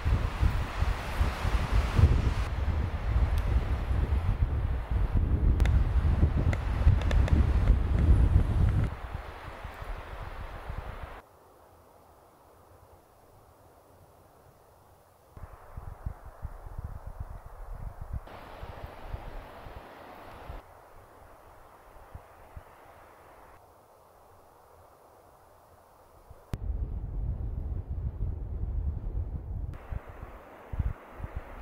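Wind buffeting the microphone in uneven gusts, loud for the first nine seconds or so and again near the end. In between, the sound drops abruptly to much quieter outdoor air.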